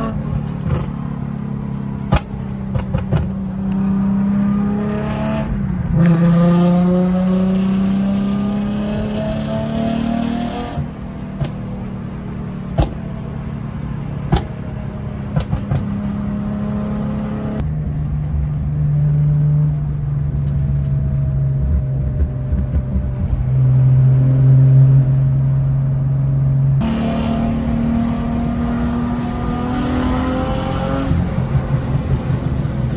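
Hyundai Genesis Coupe's 3.8-litre V6 heard from inside the cabin while accelerating on the highway: its pitch climbs and falls back several times as it shifts up, runs lower and steadier with a deep rumble through the middle of the stretch, then climbs again near the end.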